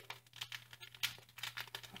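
A Nissin instant-ramen seasoning packet being flicked with the fingers to knock the powder to the bottom: soft crinkling of the sachet with a few light ticks.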